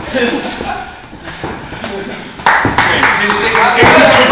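Boxing gloves landing punches in sparring: a few sharp hits, the first coming suddenly about two and a half seconds in, over shouting voices echoing in the gym hall.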